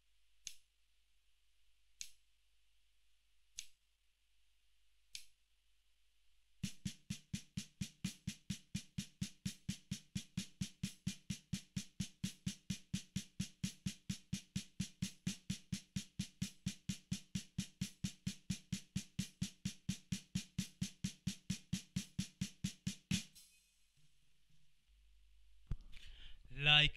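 Snare drum played with sticks in a single-stroke roll of sixteenth-note triplets, alternating hands. The strokes are even and steady at about four a second and stop sharply near the end. Four count-in clicks about a second and a half apart come before them.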